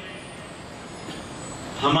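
A short pause in a man's amplified talk: low, steady background noise from a crowded hall. His voice comes back through the loudspeakers near the end.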